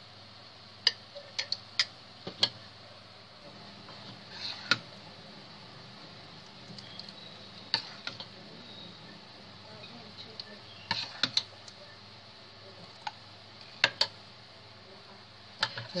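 Metal ladle clinking and tapping against a glass jar and the rim of a stainless steel pot while thick strawberry jam is ladled into the jar: a string of separate sharp clicks, a few seconds apart, sometimes in quick pairs or threes.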